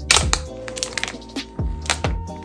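Clear plastic wrap on a phone box crackling as it is torn and pulled off, with sharp crackles just after the start and again near the end, over background music.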